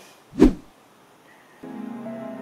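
A brief, loud edited-in sound effect hits about half a second in, then a held keyboard chord of background music starts near the end.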